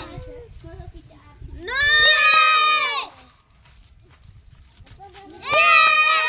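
Children giving two long, high-pitched cheering shouts, the first about two seconds in and lasting about a second, the second starting near the end.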